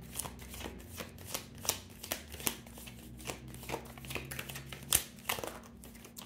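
A deck of tarot cards being shuffled by hand off camera: a run of soft, irregular flicks and taps, with a sharper snap about five seconds in.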